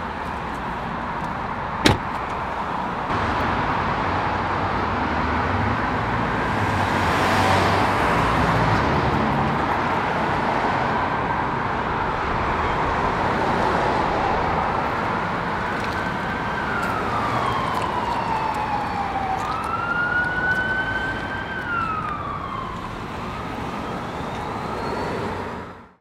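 An emergency vehicle siren wailing in slow rising and falling sweeps over steady city street traffic noise, the wail growing clearer in the second half. A single sharp knock comes about two seconds in.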